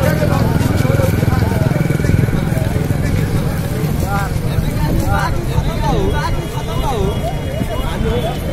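Motorcycle engines running close by, a steady low rumble strongest in the first few seconds, with people's voices talking over it.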